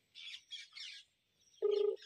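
Birds chirping faintly, then near the end a short steady beep from the phone as a call is being placed, the loudest sound here.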